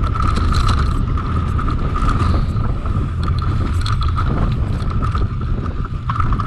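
Mountain bike rolling fast down a dirt trail: wind rumbling on the microphone, a steady high buzz from the rear freehub while coasting, and scattered short rattles and clicks from the bike over bumps.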